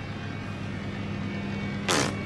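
A steady low hum with a faint hiss, and a brief burst of noise near the end.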